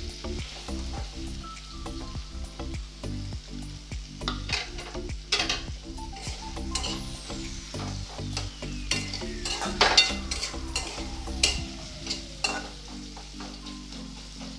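Sliced onions, garlic and ginger sizzling in hot oil in a metal kadai, stirred with a metal spatula that scrapes and clinks against the pan, with a sharp clink about ten seconds in.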